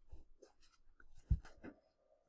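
Faint scattered clicks and scratchy rubbing of small handling noises close to the microphone, with one stronger low thump a little past halfway.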